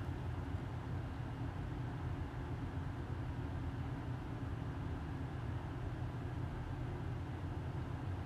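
Steady low-pitched hum and rumble with no distinct events: background room tone.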